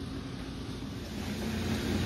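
A steady low rumble with a faint hum, a vehicle engine idling.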